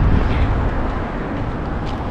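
Road traffic noise on a busy street: a steady wash of passing cars with a low rumble. It starts suddenly.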